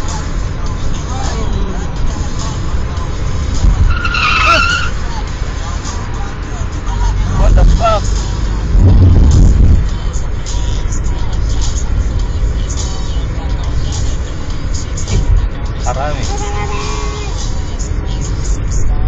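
Steady road and engine rumble inside a moving car's cabin, swelling louder for a couple of seconds near the middle.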